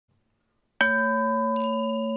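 Opening music: a single bell-like chime note is struck about a second in and rings on steadily, joined by a higher shimmering chime near the end.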